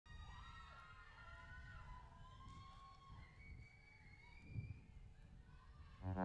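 Near silence: faint outdoor ambience with a low rumble and faint wavering, gliding tones, and one soft thump about four and a half seconds in.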